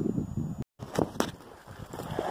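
Handling noise and rustling from a handheld camera being moved, with a few short knocks about a second in. A brief dead gap of total silence cuts through partway, the mark of an edit splice.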